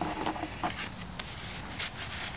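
Soft handling of paper album pages and card tags: a few faint rustles and light taps over a steady low background hum.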